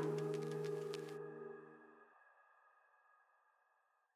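The end of a chillstep track: held synth chords fade out over about two seconds, then near silence.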